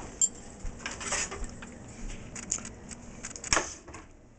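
Scattered light clicks and clatters of things being handled in a kitchen, with a sharper knock near the end as the refrigerator door is pulled open.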